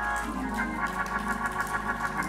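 Organ music: held chords, with a quick repeating figure in the higher notes starting about half a second in.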